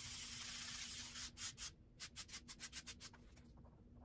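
Soft pastel stick scraping on pastel paper: one long stroke for about the first second, then a string of short, quick strokes.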